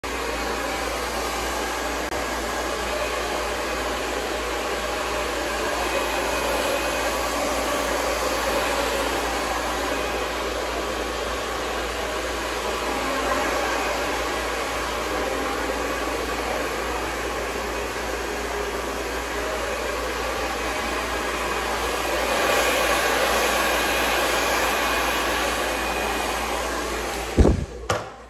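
Handheld hair dryer blowing steadily while hair is blow-dried, loud and close to the microphone. It cuts off suddenly near the end, just after a short knock.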